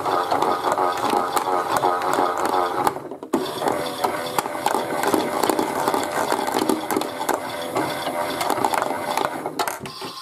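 Chad Valley toy washing machine running, its small motor and plastic gears turning the drum with a rattle. It stops briefly about three seconds in, starts again, and cuts off near the end as the drum comes to rest.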